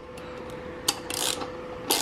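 Socket wrench turning a steel stud out of an intake-manifold flange: a few light metallic clicks and a short scratchy scrape of metal on metal, over a faint steady hum.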